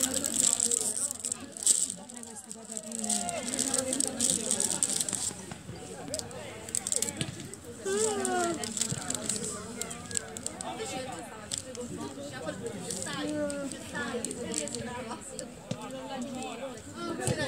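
Voices of players and people on the sideline calling out across a football pitch, in short scattered shouts, with a loud call about eight seconds in. A rustling hiss sits over the voices for the first few seconds.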